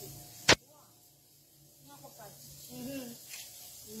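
A single sharp click about half a second in, followed by quiet with faint voices talking.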